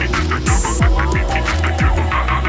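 Psytrance track: a steady four-on-the-floor kick drum, about two beats a second, with a rolling bassline filling the gaps between kicks, and fast pulsing synth and hi-hats above.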